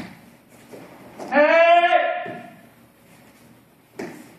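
A man's kihap, the spirit shout of a taekwondo form: one loud shout of about a second, starting about a second in. A short sharp sound comes at the very start and another at the end.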